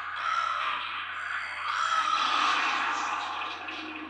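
Anime soundtrack playing: a steady rushing noise with a faint tone rising and falling through it, with no voices.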